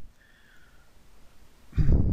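Quiet room tone, then, about a second and a half in, a loud breathy exhale close to the microphone.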